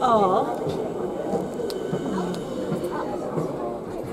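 Indistinct voices of people talking in a dining carriage, with one voice gliding down in pitch right at the start.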